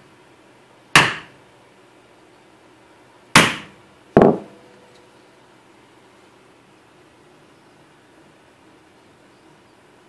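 A bowling ball striking a metal belt-buckle blank set in a wooden doming block, three heavy thuds: one about a second in, then two close together a little past three and four seconds, the last with a short metallic ring. The blows dome the blank further on one side.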